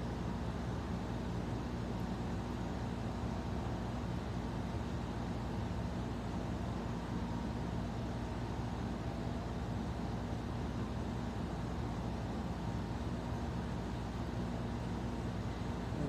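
A running fan: a steady low hum with an even hiss that does not change.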